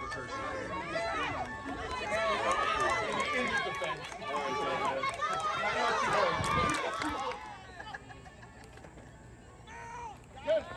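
Many voices shouting and cheering at once, the excited yelling of spectators and players during a youth football play, with no single voice standing out. It dies down about seven and a half seconds in.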